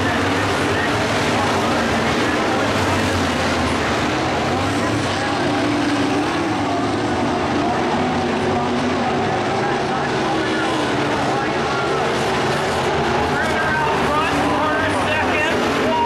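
Dirt-track modified race cars running around the oval, their engines revving, with a dense wash of engine noise and rising pitch glides from acceleration near the end.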